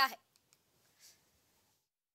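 The last syllable of a woman's narration, then near silence: two faint clicks and a soft breath of hiss, and the sound cuts to dead silence near the end.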